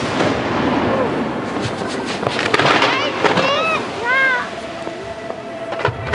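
Fireworks display: a dense crackle of bursting shells, busiest in the first half. Short rising-and-falling voices of onlookers are mixed in around the middle.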